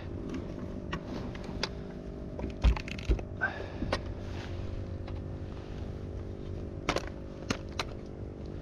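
Scattered light clicks and knocks as a mangrove snapper and a fish-measuring ruler are handled on a sit-on-top kayak, over a faint steady low hum.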